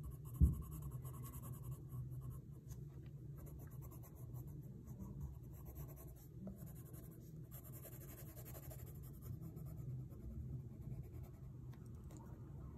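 Colored pencil scratching on paper in rapid back-and-forth hatching strokes as red is shaded over a drawing. About half a second in there is a single low thump.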